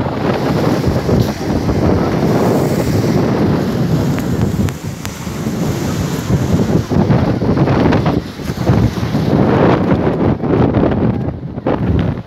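Wind buffeting a handheld phone's microphone, a loud low rumble that surges and eases in gusts and drops briefly about five seconds in and again near the end.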